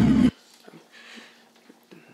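Sound from the video being watched, a loud wavering pitched tone with overtones, cuts off abruptly about a third of a second in as playback is paused. After it only faint room sounds and small rustles remain.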